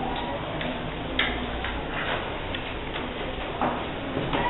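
Scattered light clicks and taps from children working at wooden desks, over steady room noise, with one sharper click about a second in.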